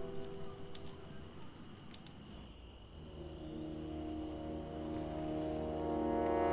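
Faint cricket chirring in a quiet forest ambience, stopping about halfway through. A low, sustained orchestral drone then swells in.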